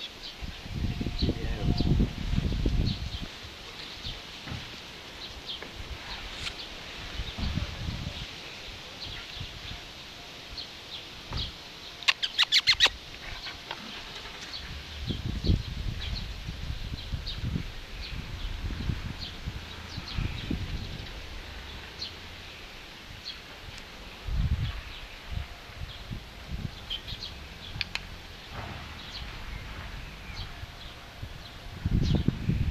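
Small birds chirping faintly and intermittently, with bouts of low rumbling and a quick run of about six sharp clicks around the middle.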